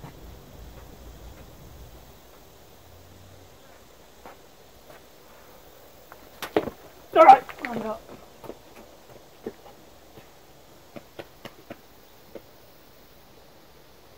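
A handful of diatomaceous earth powder thrown up at a wasp nest: one sharp thump about six and a half seconds in, followed at once by a short vocal grunt from the thrower. A run of faint light clicks follows for a few seconds.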